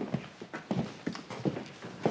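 Footsteps of people walking out of a room, a quick, uneven run of steps, three or four a second.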